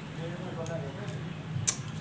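Chopsticks clicking against noodle bowls, with one sharp click near the end, under faint murmured speech and a steady low hum.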